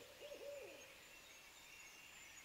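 Faint owl hooting: a quick run of short, falling hoots that stops under a second in. Thin, faint high tones sit in the background.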